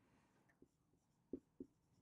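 Marker pen writing on a whiteboard: near silence with a few faint, short strokes, the clearest two about a second and a half in.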